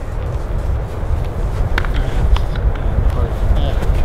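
Wind buffeting the microphone: a steady low rumble, with a couple of faint taps about two seconds in.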